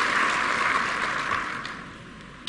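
A loud, even rushing hiss with no voice or tone in it. It fades away during the last half second.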